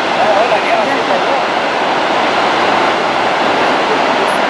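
Steady rush of churning water and waves in the lake below the glacier's ice front, stirred up by a large ice collapse. People's voices are heard faintly in the first second.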